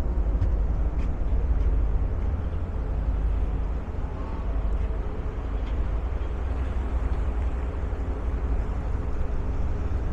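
A harbour ferry under way: a steady low rumble of engine drone and water, with wind buffeting the microphone on the open deck.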